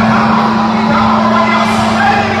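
Loud live worship music through a PA system: a man singing into a handheld microphone over a held low note from the band.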